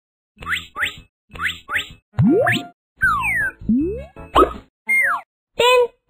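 Cartoon sound effects: four quick rising chirps in two pairs, then a run of longer whistle-like slides in pitch, some rising and some falling.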